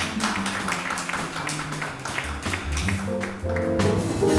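Live jazz trio of piano, upright double bass and drum kit playing an up-tempo tune, with the bass's plucked low notes moving under busy drums and cymbals.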